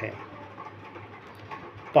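A pause between spoken sentences, holding only a faint, even background noise with no distinct event.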